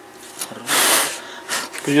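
A person's short, forceful exhale through the nose, about half a second long, a little over half a second in, followed by faint clicks from the pliers on the radiator.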